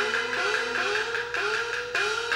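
Peking opera accompaniment: a plucked string instrument comes in suddenly and plays a run of notes, each sliding upward in pitch.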